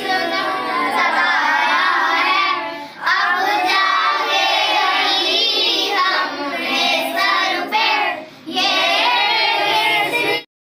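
Children singing a song together, with brief pauses between lines about three seconds in and again near eight and a half seconds.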